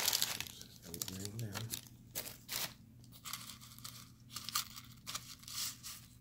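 Tissue paper and thin plastic wrapping crinkling and rustling in a string of short crackles as small items are unwrapped and handled.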